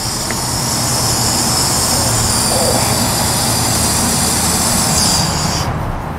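Water rushing under pressure through the fill hose and valve into the tire, a steady hiss that cuts off suddenly near the end as the flow is shut off. A steady low machine hum runs underneath.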